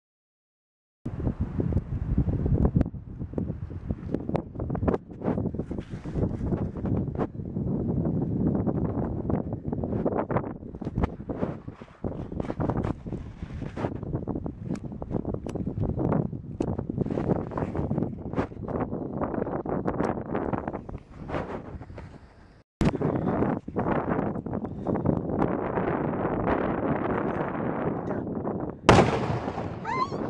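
Wind buffeting the microphone, then near the end a single loud boom as a homemade beer-can mortar fires a concrete-filled can on a 3 oz black powder charge.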